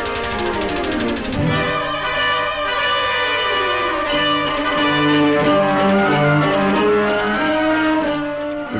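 Orchestral cartoon score led by brass. It slides downward in the first second and a half, then settles into held brass notes.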